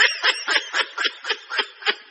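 A person laughing in a steady run of short 'ha-ha' bursts, about three a second.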